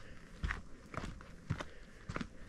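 Footsteps of a hiker walking at a steady pace on a dirt forest trail, about two steps a second.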